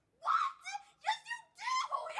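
A teenage girl's high-pitched, wavering emotional cries in four short bursts.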